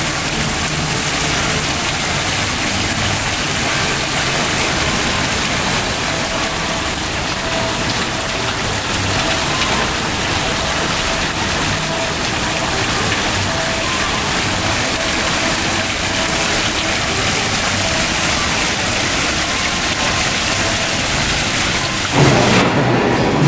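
Water pouring from a tipped terracotta pot into the basins of a terracotta fountain: a steady splashing.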